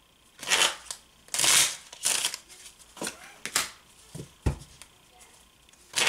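A deck of red-backed playing cards being shuffled by hand in a series of short bursts, with one low knock about four and a half seconds in.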